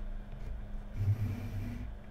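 Low rumbling handling noise from the Blackmagic URSA Mini 4.6K's body and lens being gripped and moved, picked up by the camera's built-in microphone. It grows heavier about a second in, over a faint steady hum.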